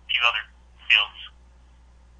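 A man speaking over a conference-call line, two short phrases in the first second and a half, then only a steady low hum.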